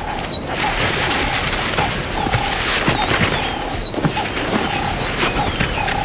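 Wild bush ambience with birds calling. Two quick whistled calls come near the start and again about three and a half seconds in, and a short low call repeats every half second or so, over a dense hiss and a steady high trill.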